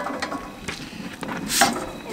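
Metal clicks and scrapes from a Blackstone Adventure Ready portable propane griddle as its steel cooking plate is handled, with a louder scrape about one and a half seconds in.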